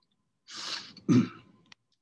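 A man clearing his throat: a short rasping rush about half a second in, then a louder, deeper clear just after one second.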